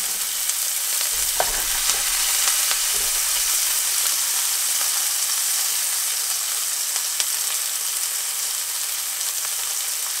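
Chopped onion and garlic sizzling steadily in hot oil in a frying pan, with a few faint clicks.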